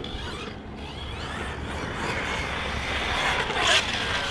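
Electric RC desert buggy's brushless motor running on a 6S battery, a whine under noise that rises and climbs in pitch near the end as it accelerates.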